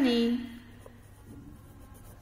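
A pen writing on paper in a workbook, faint strokes after a drawn-out spoken word ends in the first half second.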